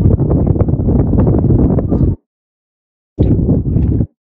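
Wind buffeting the microphone: a loud, rough low rumble with crackle. It cuts off abruptly about two seconds in and comes back for the last second.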